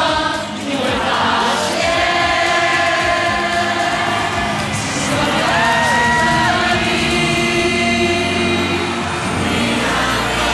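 A mass choir of about a thousand amateur voices singing a Mandarin pop anthem together over a backing band. The singing gives way to the instrumental music near the end.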